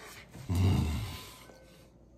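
A man burps loudly while eating a burrito, one low, rough belch about half a second in, lasting under a second.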